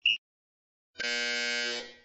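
Workout interval timer counting down: a short high beep at the start, then about a second later a longer buzzer tone lasting nearly a second, signalling the end of the 30-second work interval.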